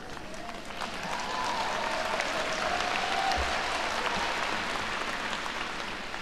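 Large audience applauding, the clapping swelling about a second in and easing off toward the end.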